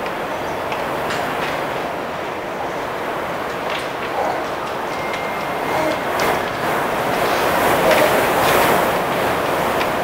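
Steady, fairly loud background noise of a large room, with a few faint clicks and no speech.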